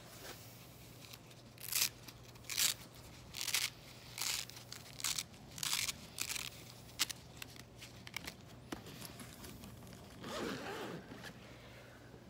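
Unpacking a portable power station and its fabric carry bag: about nine short, sharp ripping strokes in quick succession, then a softer rustle near the end.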